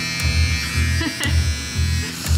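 Electric hair clipper running with a steady high hum, held up by the head. Background music with a regular bass beat plays underneath.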